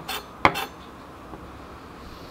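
Kitchen knife chopping garlic on a wooden cutting board: a few quick knocks in the first half second or so, the loudest about half a second in, then the chopping stops.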